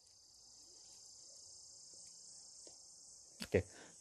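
Faint, steady, high-pitched chirring of crickets in the background, with a brief spoken "okay" near the end.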